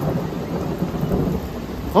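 Thunder breaking suddenly into a deep rumble that rolls on over falling rain.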